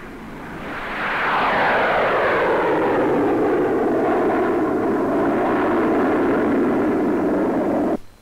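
Gloster Meteor jet fighter with two Rolls-Royce Avon turbojets at full power on take-off and climb-out. The jet roar builds over the first second, then holds steady, with a whine that slowly falls in pitch as the aircraft passes. It cuts off suddenly at the end.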